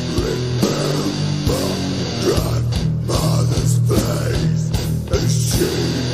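Doom metal track: distorted electric guitar and bass hold a heavy low chord under irregular drum hits, with a melodic guitar line moving above it.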